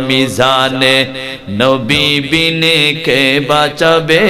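A man's voice chanting a Bengali dua (supplication) in long, drawn-out melodic phrases, with short pauses for breath.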